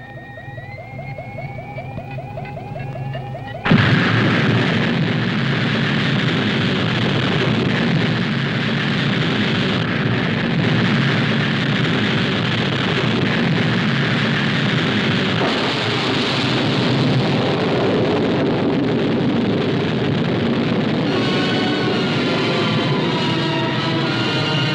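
Film sound effect of a rocket launch. It opens with a rising electronic whine over a fast pulsing tone; about four seconds in, the rocket engines ignite with a sudden, loud, steady rush of exhaust that holds to the end. Music comes in near the end.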